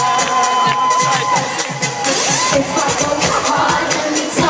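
Concert crowd screaming and cheering over a live pop band playing through a large PA. About two and a half seconds in, heavy bass joins the music.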